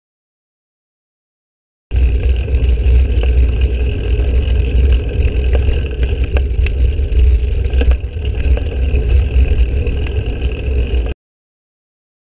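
Wind buffeting a bike-mounted camera's microphone while riding, with tyre and road rumble and a few sharp knocks over bumps. It cuts in suddenly about two seconds in and cuts off abruptly near the end.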